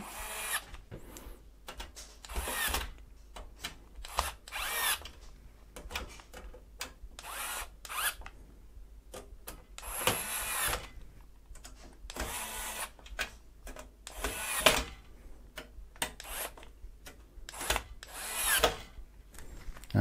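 Hand screwdriver tightening the radiator mounting screws on a PC case top panel: irregular bursts of scraping and clicking as each screw is turned, with short pauses in between.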